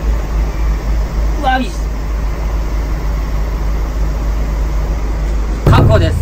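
A steady low rumble, with a short voice about one and a half seconds in and a louder voice starting just before the end.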